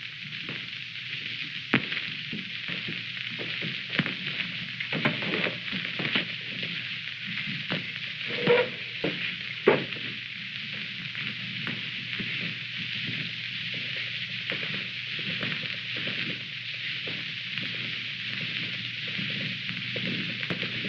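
Steady hiss of a worn early-1930s optical film soundtrack, with scattered crackles and pops and a faint low hum.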